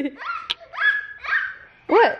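Young children laughing and squealing in a string of short, high-pitched bursts, with a sharp click about half a second in.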